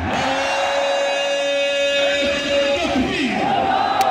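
A soldier's drawn-out shouted parade command, one steady held note for about two and a half seconds, over a large crowd. The crowd then breaks into shouts and cheers.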